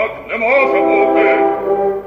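A male opera singer singing in Ukrainian with a wide vibrato: a short rising phrase, then a note held for over a second.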